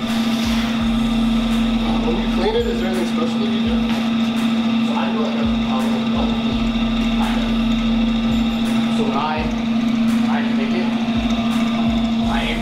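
A steady hum with faint, indistinct voices over it.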